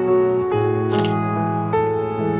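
Background piano music with sustained chords. About a second in, a single camera shutter click cuts across it, marking a photo being taken.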